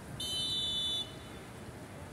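A referee's whistle: one steady shrill blast of just under a second.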